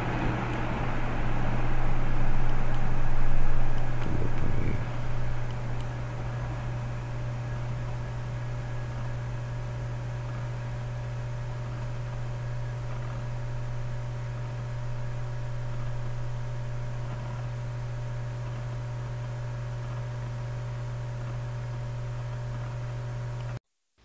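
Steady low hum with background hiss. A louder rushing noise swells and fades over about the first five seconds, and the sound cuts off abruptly just before the end.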